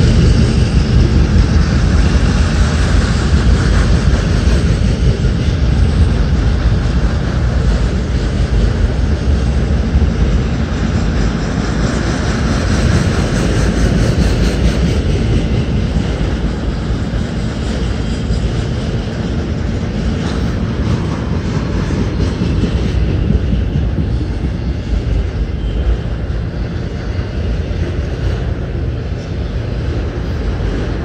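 Autorack freight cars rolling past close by: a steady, loud rumble of steel wheels on rail, easing slightly toward the end.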